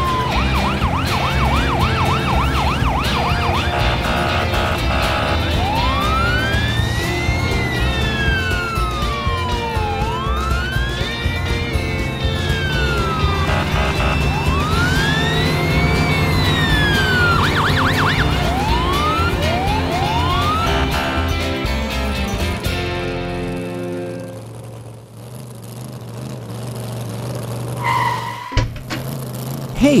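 Police car siren sound effect, a fast yelping warble at first and then a slow wail rising and falling about every four seconds, over background music with a steady beat. Siren and music fade out about three-quarters of the way through.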